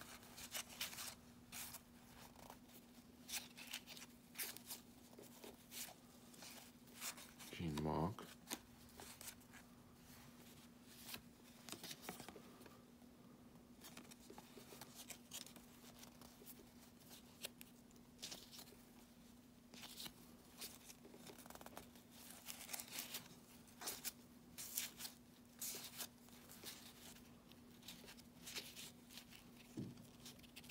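Cardboard baseball trading cards being flipped and slid off a stack one by one, giving a scattered run of faint papery clicks and swishes.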